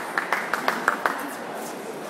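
Hand clapping, quick and even at about six claps a second, stopping about a second in and leaving the steady hubbub of a busy sports hall.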